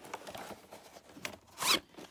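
Plastic VHS cassette sliding into its cardboard sleeve: a scraping rustle with a few light clicks, and a louder short scrape near the end as it goes fully in.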